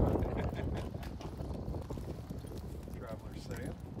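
Horse's hooves clopping irregularly as it walks, with people's voices close by.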